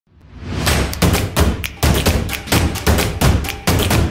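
Channel logo intro sound effect: after a fade-in, a run of heavy, deep percussive hits with echoing tails, about two to three a second.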